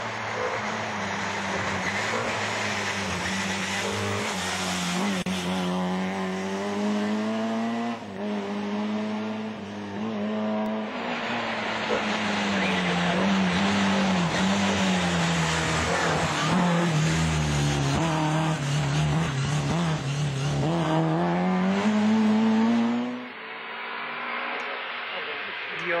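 Rally car engine at high revs on a stage, its pitch rising and falling again and again through gear changes and lifts, getting louder as the car approaches. It cuts off abruptly a few seconds before the end.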